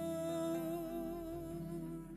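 A woman's voice humming one long held note with a slight vibrato, with bağlama accompaniment underneath, at the close of a Turkish folk song (türkü).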